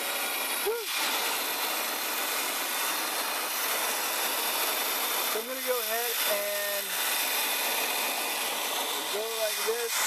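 RoboCut vacuum hair clipper running: its built-in vacuum and clipper make a steady, even airy noise as the cutting head is passed over the hair. Short vocal sounds come from the person using it, once near the start and twice later.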